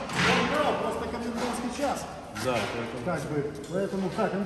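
Men's voices talking in the background, not clear enough to make out, with a few light knocks in among them.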